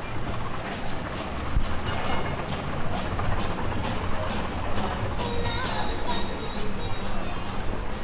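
Large Ferris wheel turning: a steady mechanical rumble with light clicks about twice a second, with music playing over it.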